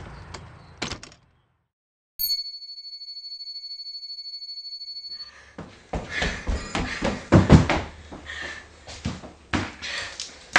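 A door opening with a couple of knocks, then a cut to dead silence and a steady high-pitched test-card beep held for about three seconds. After it, irregular knocking and clattering handling noise, with the loudest knocks about seven and a half seconds in.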